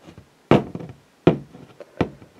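Two sharp knocks about three-quarters of a second apart, each dying away quickly, with a few faint clicks between them.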